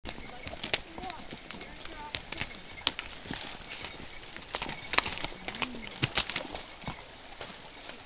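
Horses walking on a rocky dirt trail: hooves clopping and striking stones in an irregular series of sharp knocks.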